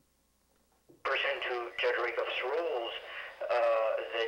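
Near silence for about a second, then a person talking over a telephone line, the voice thin and narrow.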